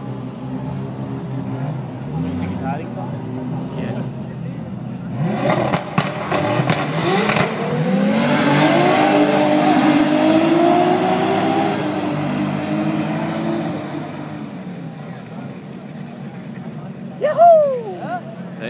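Two Toyota Supra engines idling at the start line, then launching about five seconds in: both rev and climb in pitch through several gear shifts, then fade as the cars pull away down the drag strip.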